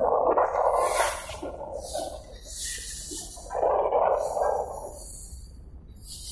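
Sea water splashing and sloshing against the side of a small boat, in two surges, one at the start and one about four seconds in, over a steady low rumble.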